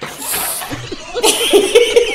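A man and a woman laughing hard. A breathy rush comes first, then from about a second in a quick run of loud, rhythmic laughs.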